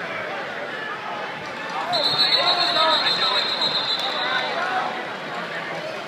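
Arena crowd chatter that swells from about two seconds in. Over it, a long, high, steady whistle is held for about two and a half seconds.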